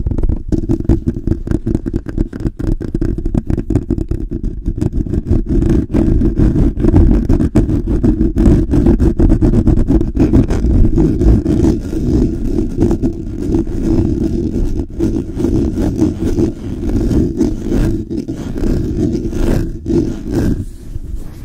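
Hands rubbing and swirling fast over the grille of a Blue Yeti microphone, giving loud handling noise: a dense low rumble with rapid scratchy strokes.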